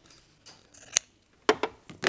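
Scissors clipping quilt fabric: several short, sharp snips in the second half.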